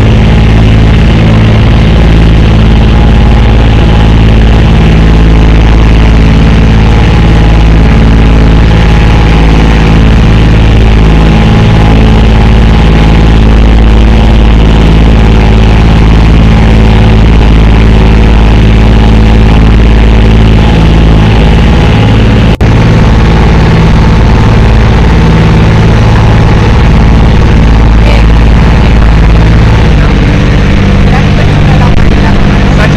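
A small motorboat's engine runs loud and steady, holding an even speed as the boat cruises along.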